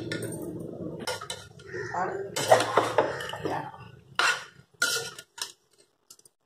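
A perforated steel ladle scraping and knocking against the inside of an aluminium pressure cooker as cooked rice is stirred together with the brinjal masala, in irregular clanks and scrapes that stop shortly before the end.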